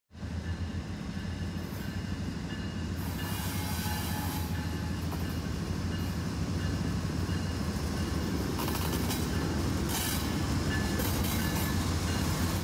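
Diesel-electric freight locomotives passing close by, their engines running with a steady heavy drone that grows slightly louder as they come level. Thin high squeals, likely from the wheels on the rails, come and go over the drone.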